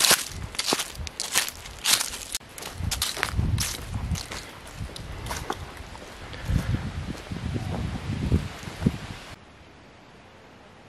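Footsteps of trail shoes crunching on a dry, leaf-littered dirt trail at a steady walking pace of about two steps a second, with a low rumble under the steps in the second half. Near the end the sound cuts abruptly to a faint steady hiss.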